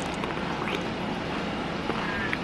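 Steady background noise with a few faint crunches of a person chewing a bite of pickle.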